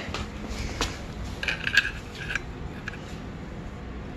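Light metallic clinks and taps of a steel locking C-clamp with welded-on C-channel jaws being set against a motorcycle clutch: a sharp click about a second in, a short run of ringing clinks soon after, then a few lighter ticks.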